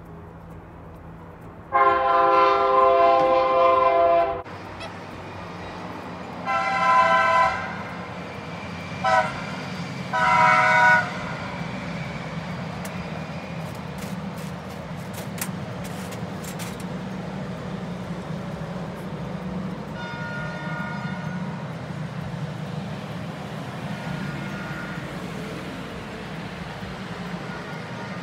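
Train horn sounding the long, long, short, long pattern of a grade-crossing warning, a chord of several notes. A steady low rumble follows, with two shorter, fainter horn blasts near the end.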